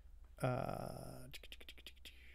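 A man's short, breathy, wordless vocal sound lasting under a second, followed by a quick run of about eight sharp clicks from a computer.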